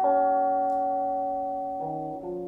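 Background music: slow, held piano chords that fade gradually, with a new chord struck near the end.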